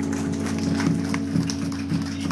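Amplified rock-band instruments holding a steady drone through the stage amps, with scattered sharp taps and clicks over it.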